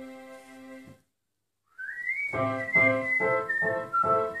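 Digital piano playing: a held chord that stops about a second in, a short break of silence, then repeated chords about three a second. A high whistle-like tone glides up and holds above the chords as they start.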